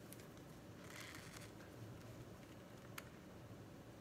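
Near silence with faint handling of a plastic jar of whipped body butter as its screw lid is twisted off, and one small click about three seconds in.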